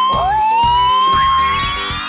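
Edited-in sound effect: a whistle-like tone gliding slowly upward, starting over just after the beginning and held for nearly two seconds, over background music.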